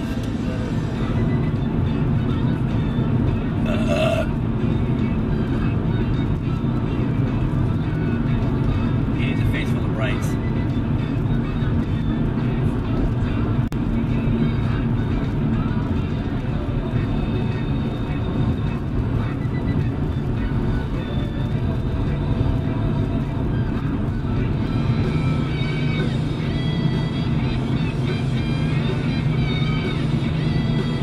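A song with vocals playing from the car's radio inside a moving car's cabin, over steady road noise.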